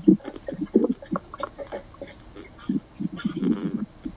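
Indistinct, choppy vocal sounds from a person's voice, in many short broken bits rather than clear words.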